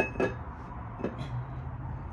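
A few light metallic clinks and knocks, two close together at the start and one about a second in, as a flywheel is handled and offered up to the engine's crankshaft flange.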